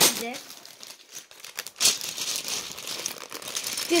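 Clear plastic bag of Lego bricks crinkling as it is handled. The crinkling is louder and denser from about two seconds in.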